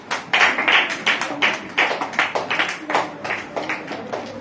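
Hands clapping together in a steady rhythm, about two to three claps a second, loudest in the first second.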